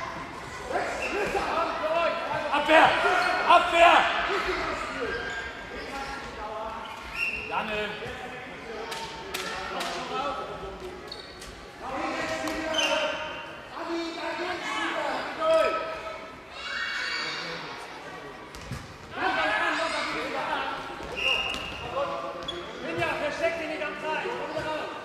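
Children's handball game in a large echoing sports hall: players' and spectators' voices calling and shouting over one another, loudest a few seconds in, with the handball bouncing on the hall floor now and then.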